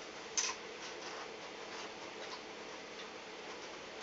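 Small clicks of a plastic airsoft G36C body being handled as its takedown pins are worked out: one sharper click about half a second in, then a few faint ticks.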